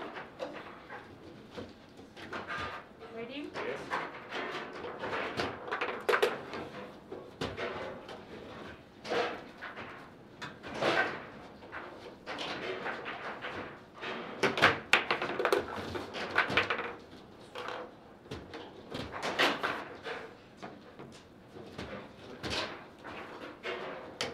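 Foosball table in play: irregular sharp clacks and knocks as the figures on the steel rods strike the ball and the ball and rods bang against the table, with a louder run of knocks a little past the middle.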